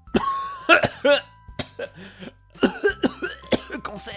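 A person laughing and coughing in short fits, one at the start and another about two and a half seconds in, with a quieter pause between.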